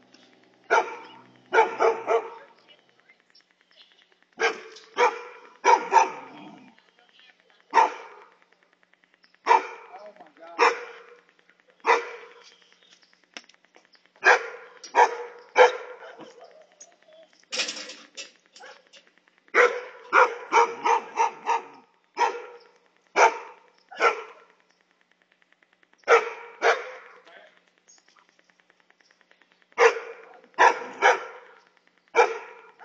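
A large curly-coated dog barking repeatedly in short, sharp barks, some single and some in quick runs of two or three, with gaps of a second or two between them.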